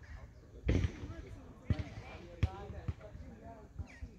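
People talking, unclear, with about five dull thumps at irregular intervals.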